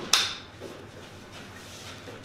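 A brief sharp rustling swish about a tenth of a second in, fading within a moment, as a person shifts on a padded chiropractic treatment table. Then only quiet room sound.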